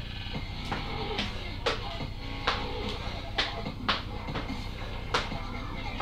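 Feet stepping and stamping on an exercise step and the floor in a side-stamp move, about one sharp thud a second at uneven spacing, over background music.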